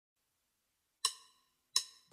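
Two short ringing percussion hits at the start of a reggae track, the first about a second in and the second just before the band comes in.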